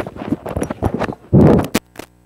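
A rapid, irregular run of clicks and knocks, with one louder, longer noisy thump about one and a half seconds in.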